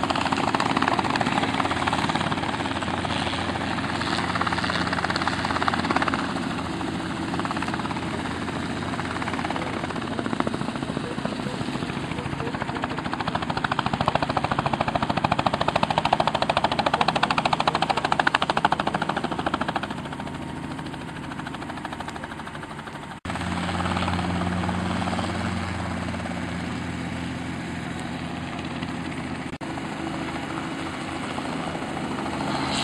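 Light two-bladed helicopters hovering and lifting off close by: a continuous rotor chop and engine sound that swells and fades as they move, with an abrupt change in level about three-quarters of the way through.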